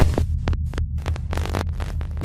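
Glitch-style electronic intro sound effect: a deep steady hum, broken by a rapid, irregular run of sharp digital static clicks and crackles.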